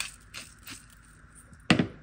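A few faint light clicks, then one short, loud knock near the end, like something bumped against a hard surface.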